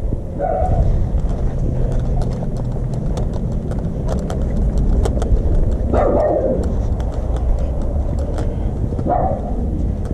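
A dog barks three times: once about half a second in, once at six seconds and once near the end. Under the barks run a steady low rumble and scattered clicks and footfalls from the handheld camera.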